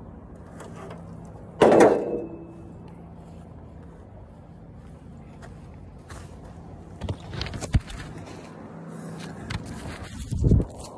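Handling noises close to the microphone: one loud clank about two seconds in, then quieter knocks and footsteps on grass near the end, over a faint low hum.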